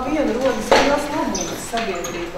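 A woman speaking, with a sharp clatter under a second in and a brief high ring soon after.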